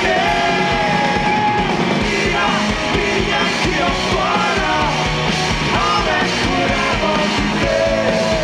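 Live alternative rock band playing: a male lead vocal sings over electric guitar and drums, holding one long note in the first second and a half.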